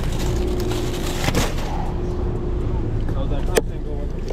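A plastic-wrapped case of bottled water being handled, with crackles about a second in and a sharp click a little before the end, over a steady low rumble.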